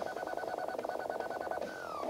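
Dubstep track: a held electronic synth tone with a fast buzzing stutter, which glides down in pitch near the end.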